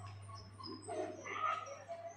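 High chirps of small birds over a steady low hum, with a louder, wavering call in the middle.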